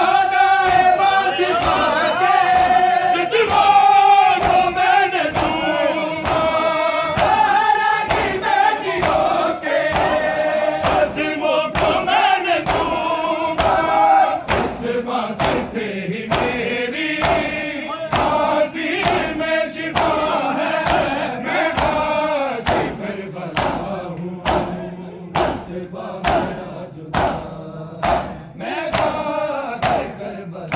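Large group of men chanting a noha together, kept in time by matam: open palms striking bare chests in a steady beat. After about twenty-two seconds the chanting thins out and the chest beats carry on, about one and a half a second.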